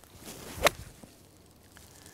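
A golf club swishing through the downswing, then a single sharp strike about two-thirds of a second in as the clubface takes the ball first from a fairway bunker.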